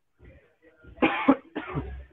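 A man coughing hard twice in quick succession, starting about a second in, as he smokes: smoke-induced coughing.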